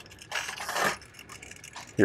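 Friction motor of a 1950s Japanese tin toy truck whirring briefly, for about half a second, as its wheels are pushed along a wooden shelf to spin up the flywheel that drives it.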